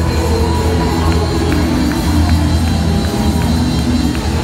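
Live gospel band playing: electric guitar, bass and drum kit, with a heavy, sustained bass line and a steady beat.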